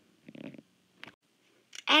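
A brief, rough throat noise from the narrator, followed about a second in by a single faint click; the speaking voice starts again just before the end.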